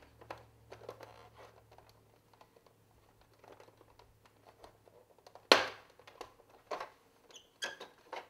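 Hard plastic parts of a 1981 Kenner Slave I toy being handled and pressed together: a run of light clicks and taps, with one sharp click about five and a half seconds in and a few more near the end.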